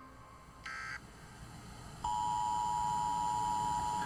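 A steady electronic beep, one unchanging tone with overtones, starting about halfway through and holding for about two seconds. A brief short note sounds about a second in.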